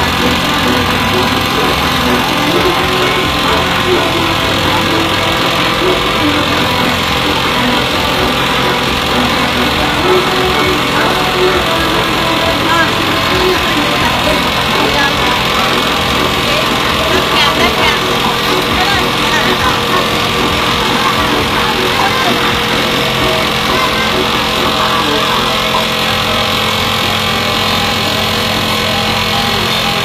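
Indistinct voices and music over a steady mechanical hum from a cotton candy machine's spinning head.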